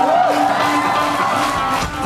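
Amplified live rock band playing in a concert hall, with crowd noise underneath; held notes slide up and down in pitch over a steady low tone.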